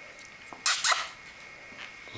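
A cat hissing twice in quick succession, two short harsh bursts about half a second in.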